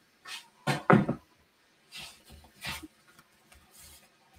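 A few short knocks and clunks of a hand-cranked die-cutting and embossing machine being moved aside on a craft table, the loudest about a second in. Lighter knocks and paper sounds follow as a piece of cut cardstock is laid on a grid mat.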